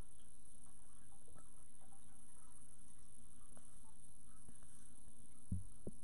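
Light handling noise over a steady hiss: a few faint scattered clicks and one soft low thump about five and a half seconds in, as the camera and laptop are handled.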